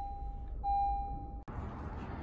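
Car interior warning chime: a steady electronic beep held for just under a second, sounding twice with a short gap. It cuts off abruptly about one and a half seconds in, and a low steady rumble follows.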